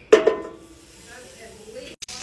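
A short loud burst right at the start, then a stick of butter sizzling as it melts in a hot cast-iron skillet, a faint even hiss.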